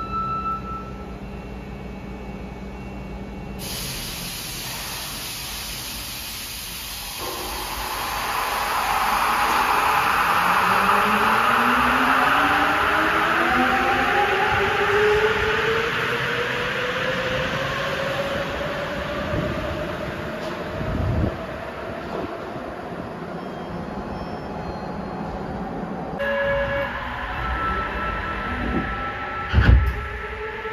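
Rubber-tyred Sapporo Municipal Subway train pulling out of the station: its inverter-driven traction motors whine in several tones that climb steadily in pitch as it accelerates, over a rushing noise that swells and then eases as it goes. A short thump near the end.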